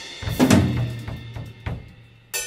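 Drum kit struck after the song has ended: one loud hit about half a second in, with a low note ringing underneath, then a few lighter strikes that fade.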